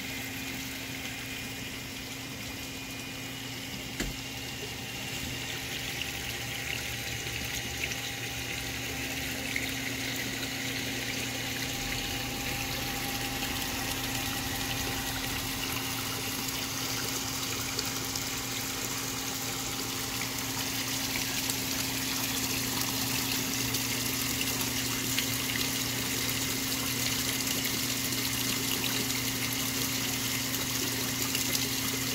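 Koi pond water circulation running: a steady rush of moving, splashing water with a low, even pump hum underneath, growing louder toward the end.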